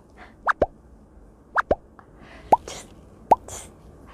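A string of short cartoon-style plop sound effects, each a quick pitch sweep: two pairs of falling plops, then two single rising ones.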